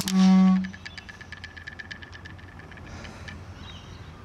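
A didgeridoo drone ends on one loud held note. It is followed by a faint, fast, even clicking for a couple of seconds.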